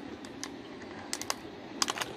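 A handful of short, sharp clicks, irregularly spaced, over a low steady background hiss.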